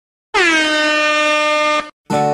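Handheld canned air horn giving one long blast of about a second and a half. Its pitch dips slightly as it starts, then holds steady until it cuts off.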